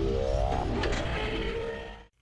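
Electronic intro music with a loud whooshing, engine-like sound effect laid over it, fading out near the end.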